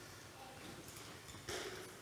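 Quiet room tone with a few faint clicks, and a soft breath from the speaker near the end.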